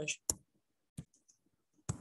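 Three sharp, short clicks about a second apart, with near silence between them.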